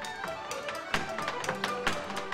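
Irish traditional dance tune on accordion with guitar and strings, over a step dancer's shoes striking quick, irregular taps on a wooden floor.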